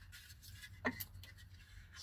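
Faint handling of a plastic interior door handle being lined up against a van's door trim panel, with two short sharp clicks close together just under a second in.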